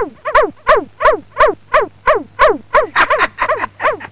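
A man laughing hard in a long unbroken run of even 'ha' syllables, about five a second, each dropping in pitch.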